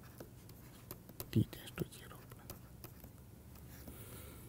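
Faint ticks and taps of a stylus writing on a tablet screen, with two short low sounds about halfway through.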